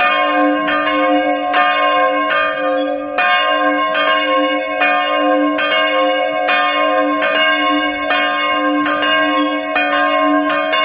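Two bronze church bells swinging and ringing together in a steady, overlapping peal, their clappers striking about two to three times a second. They are a 200 kg bell cast in 1964 and tuned to D² and a 250 kg bell cast in 1930 and tuned to C². The smaller bell's clapper is fairly loose.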